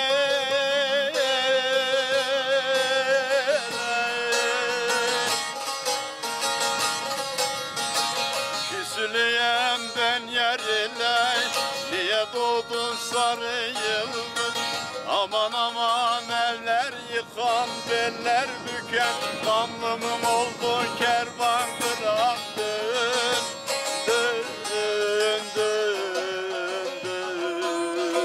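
A man singing a Turkish folk song (türkü) to his own plucked bağlama (saz), opening with a long held vocal note with vibrato, then the bağlama's quick stepping melody.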